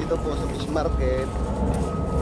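A voice talking briefly over a steady low rumble, with a faint steady high-pitched tone.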